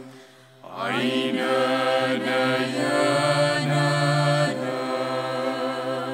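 Slow, sustained music from a small Arabic ensemble with bowed cello and ney. A held drone sits under a wavering melodic line, which dips briefly, slides upward about a second in, and then settles into long held notes.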